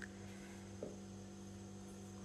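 A quiet, steady electrical hum, with a faint short tick at the start and another just under a second in.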